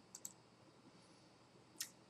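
Near silence with a few faint computer clicks: two quick ones just after the start and one shortly before the end.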